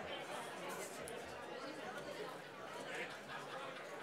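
Quiet murmur of audience chatter in the hall, with several people talking at once and no single clear voice.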